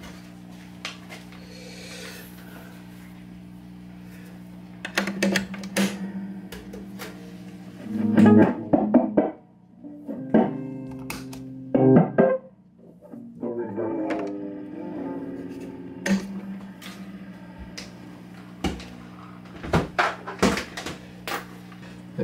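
Electric guitar notes and chords played through an early-1960s Ampeg Reverborocket tube amp during a test after repair work, with a steady mains hum from the amp underneath. The notes come in short phrases with pauses between them.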